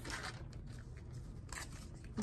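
Crumpled newspaper pieces wet with paste crinkling and rustling in the hands, in two short bursts: one at the start and one about one and a half seconds in.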